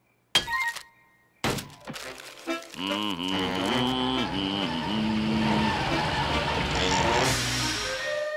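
Cartoon vending-machine sound effects: two sharp thunks about a second apart as the snack drops out, followed by a swell of cartoon score that runs on steadily.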